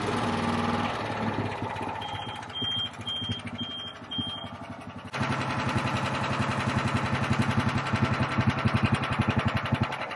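Small gasoline generator engine running. After about a second it slackens and quietens, and five short high beeps sound about half a second apart. About five seconds in it suddenly comes back louder and runs on with a steady pulsing beat.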